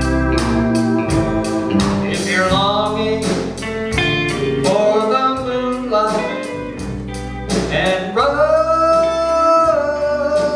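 A live country band playing: a pedal steel guitar's held notes slide up and down over electric guitars, bass and a steady drum beat.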